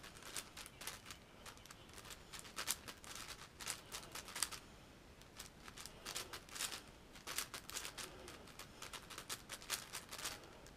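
MoYu AoFu WRM 7x7 plastic speedcube being turned quickly by hand: a fast, irregular run of light clicks and clacks as its layers snap round, with a few louder clacks between.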